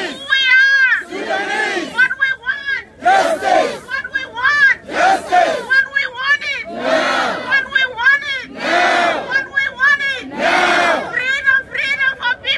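Protest chanting in call and response: a leader calls each line through a megaphone and the crowd shouts it back, the exchange repeating about every two seconds.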